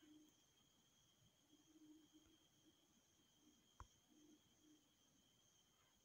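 Near silence: a faint steady high electronic whine, with a single faint click about four seconds in.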